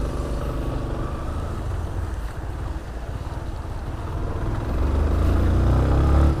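Yamaha Fazer 250 motorcycle's single-cylinder engine running while riding in traffic, with road and wind noise over the helmet camera's microphone. The engine grows louder over the last second and a half.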